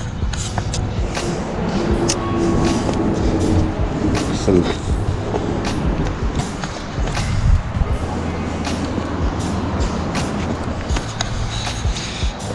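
Someone clambering over a pile of dry driftwood logs: repeated knocks, scrapes and rustles of hands and feet on the wood and brush, over a steady rumble of traffic crossing the bridge overhead.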